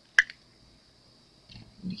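A single sharp click just after the start as the cured resin heart is worked free of its flexible silicone mold.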